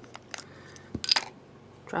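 A few light clicks of small plastic cosmetic jars being handled, then about a second in a jar lid drops with a dull knock and a short clatter.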